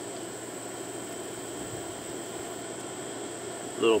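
Steady outdoor background: a constant high-pitched insect drone over a low, even hum, with no distinct handling sounds. A man's voice starts near the end.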